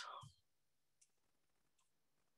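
Near silence with two faint clicks of knitting needles, about a second in and near the end, after the tail of a spoken word at the very start.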